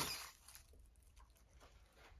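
Ball python striking and coiling around a live rat pup in a plastic tub: a short scuffle in the chip bedding that fades within about half a second, then faint scattered rustles as the snake tightens its hold.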